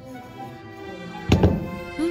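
Background music with steady held tones, and one sharp thud a little past halfway through.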